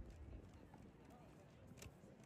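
Faint street ambience of a busy pedestrian square: distant voices talking and footsteps on cobblestone paving, with a short low bump at the very start.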